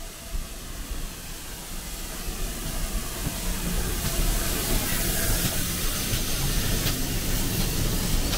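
GWR Hall class steam locomotive No. 4930 drawing slowly into a station and passing close by, its steam hiss growing louder as it comes alongside, over a low rumble of wheels on the rails. A few sharp knocks come near the end as the train rolls past.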